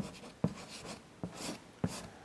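Chalk writing on a blackboard: short scratching strokes with sharp taps each time the chalk meets the board, four taps across the two seconds.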